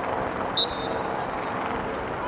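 One short, sharp referee's whistle blast about half a second in, over a steady wash of open-air noise.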